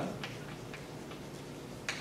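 Chalk tapping and scratching on a blackboard while writing: a few faint, irregular ticks, the sharpest near the end.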